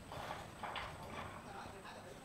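Fabric rustling and brushing in a few soft swishes as hands smooth and tuck the edge of a rug woven from fabric strips.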